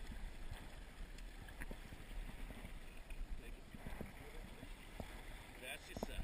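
Steady rush of river water with low rumbling wind buffeting the microphone, and a few faint clicks.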